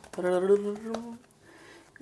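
A woman's voice making one drawn-out, level-pitched vocal sound lasting about a second, then quiet.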